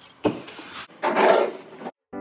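Wooden matryoshka doll being handled, rubbing against hands and the table: a short knock about a quarter second in, then a louder scraping rub in the second half that cuts off abruptly near the end.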